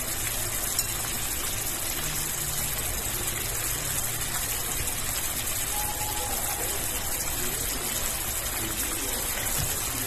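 Sweet-and-sour sauce with vegetables boiling in a frying pan, a steady bubbling hiss.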